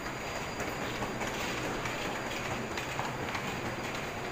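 Steady noise of a Taipei Metro train at an underground station platform, with the footsteps of passengers walking along the platform.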